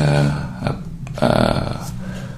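A man's voice holding two drawn-out, low hesitation sounds like 'uhh', the second starting just over a second in.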